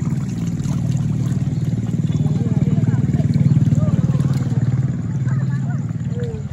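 A motor vehicle's engine running close by: a low, evenly pulsing sound that grows louder toward the middle and then fades.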